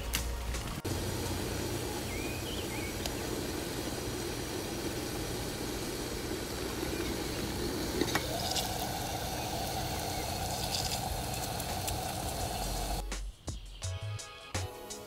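Small camping stove heating water in a stainless steel camp pot: a steady hiss of the flame and the water nearing the boil. About eight seconds in there is a click, and the hiss shifts higher in pitch. It stops shortly before the end, with music faintly underneath.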